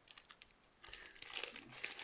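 Faint rustling and small clicks of hands handling small objects, growing busier about a second in.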